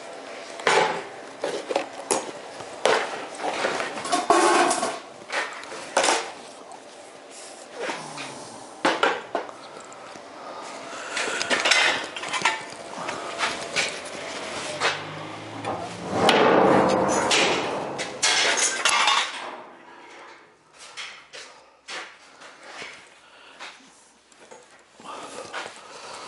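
Steel parts clanking and knocking as a bent steel tiller tube is handled and carried, in irregular metallic knocks, with a longer rattling clatter about two-thirds of the way through.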